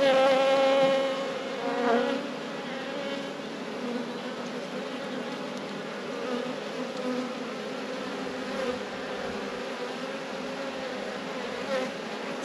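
Honeybees buzzing over an open hive and a frame of brood crowded with bees, a steady hum that is louder in the first second and again about two seconds in.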